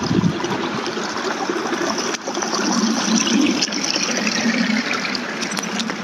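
Water of a small woodland burn trickling and running steadily.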